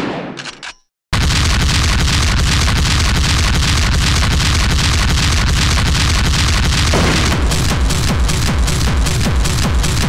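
Gabber hardcore track: a sampled boom dies away in the first second, a brief silence follows, then a fast, heavy kick-drum beat with dense electronic music comes in about a second in. The beat becomes more sharply marked about seven seconds in.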